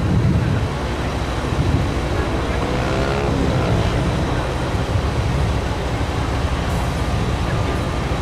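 A vehicle's engine running close by, a steady low rumble.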